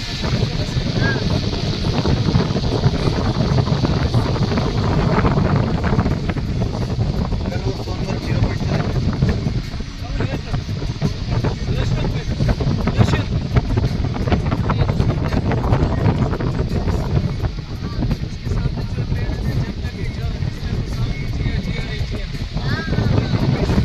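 Wind buffeting the phone's microphone: a loud, steady low rumble that continues without a break.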